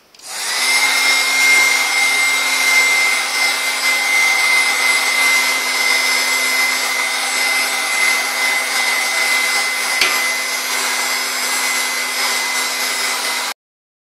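A Black & Decker two-setting heat gun is switched on and runs steadily, its fan blowing with a steady whine, as it heats a laptop motherboard for a GPU solder reflow. There is a single click about ten seconds in, and the sound stops abruptly near the end.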